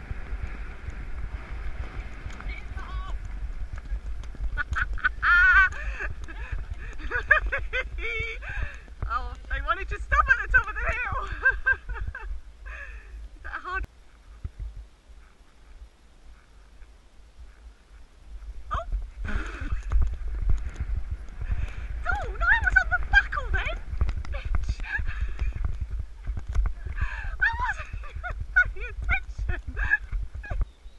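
Wind buffeting a rider's camera microphone, a low rumble while a horse moves at pace over wet grass, falling away for a few seconds about halfway. Over it come wavering voices calling and laughing, through the middle and again near the end.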